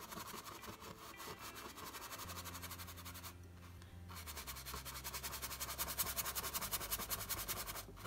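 Bristle brush scrubbing oil paint onto a canvas: rapid, scratchy strokes with a short pause a little over three seconds in. A low steady hum sits underneath from about two seconds in.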